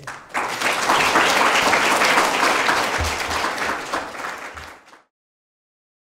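Audience applauding: dense, steady clapping that starts just after the lecture's last word, thins out over its last second, and cuts off to silence about five seconds in.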